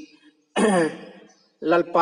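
A man clears his throat once about half a second in: a single voiced sound, falling in pitch and fading over about a second. His speech resumes near the end.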